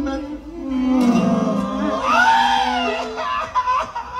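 A long shouted vocal call that rises and then falls in pitch, over a few held accordion notes, as the lead-in to a norteño band number.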